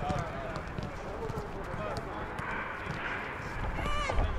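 A football kicked back and forth in quick passes, giving a string of short thuds, among players' calls and shouts.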